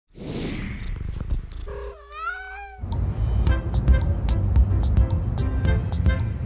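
Intro sound effects: a falling whoosh, then a single cat meow about two seconds in that rises and falls in pitch. Upbeat music with a steady beat starts at about three seconds.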